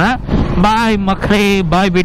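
A man talking over the low, steady running noise of a motorcycle being ridden, with wind on the microphone.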